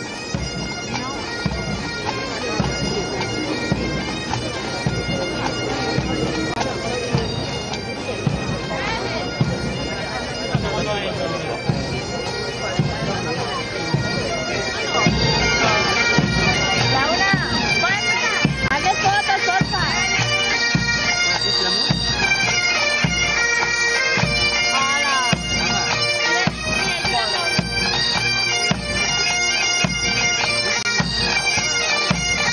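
A military pipe band's Highland bagpipes play a march in unison, with their steady drones sounding under the melody. The playing grows louder about halfway through.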